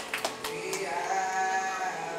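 A voice singing through a microphone, holding one long wavering note over the accompaniment, after a couple of sharp taps in the first half second.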